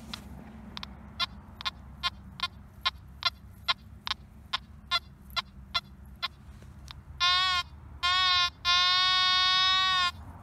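Nokta Makro Anfibio metal detector giving a quick run of short beeps, about two and a half a second, as the coil is swept back and forth over a buried target. Near the end come several longer, louder steady tones, the last held for over a second.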